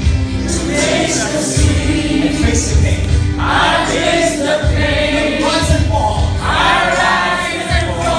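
A roomful of people singing loudly together in a group sing-along.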